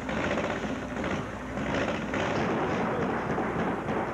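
Motorcycle engine running, with a rapid, steady train of firing pulses.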